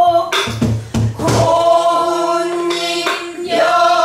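Several voices singing a Korean shinminyo folk song together in long held notes. A buk barrel drum is struck with a stick a few times in the first second and a half and once more just after three seconds.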